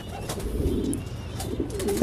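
Domestic French meat pigeons cooing in a loft: a soft, low murmur of coos.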